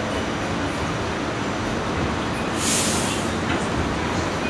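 New York City subway train running, heard from inside the car: a steady rumble of wheels and motors, with a brief high hiss about two and a half seconds in.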